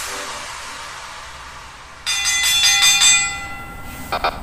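A fading hiss, then about two seconds in a bright bell-like chime of several ringing tones that slowly dies away.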